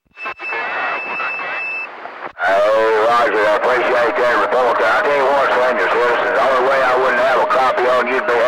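Speech over a CB radio receiver: the squelch opens on a weak signal carrying steady high whistles, then about two and a half seconds in a strong voice comes through with a steady low whistle beneath it.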